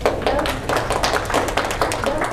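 Audience applauding: many people clapping at once, breaking out right after the closing thanks of a talk.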